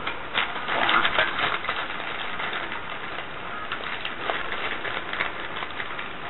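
Small plastic cosmetic spatulas clicking and rattling as they are handled and sorted through, a quick run of clicks in the first couple of seconds, then lighter, scattered ones.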